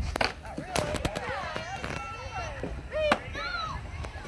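Children's high voices calling and chattering, with a few sharp knocks cutting through: one just after the start, a couple around one second in, and the loudest about three seconds in.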